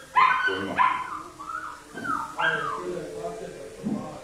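Several high, wavering animal calls in quick succession, each rising and falling in pitch, the loudest just after the start.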